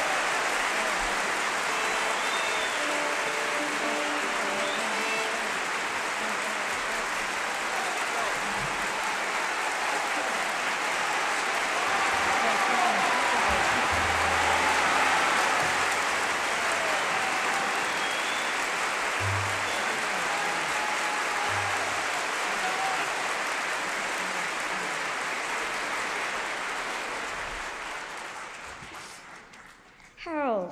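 Large concert-hall audience applauding and cheering in a long ovation, with faint instrument notes under it in the first few seconds. The applause dies away near the end.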